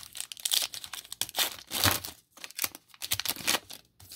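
Foil wrapper of a Panini Certified trading-card pack being torn open and crinkled by hand: a quick, irregular run of sharp crackles and rips.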